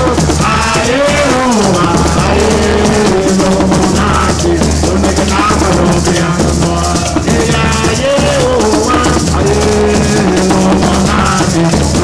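Live Garifuna drumming: several hand drums played together with a pair of maracas (sisira) shaken in a fast, steady rhythm. A voice sings a melody over the top.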